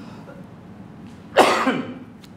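A single loud cough about one and a half seconds in.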